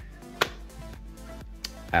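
Soft background music during a pause in speech, with one sharp click about half a second in and a fainter click near the end.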